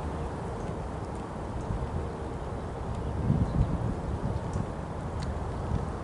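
Low, steady outdoor rumble on a handheld camera's microphone, with a brief louder low swell about three seconds in and a few faint ticks.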